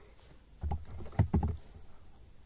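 Computer keyboard being typed on: a quick run of several keystrokes between about half a second and a second and a half in, each a sharp click with a dull thump.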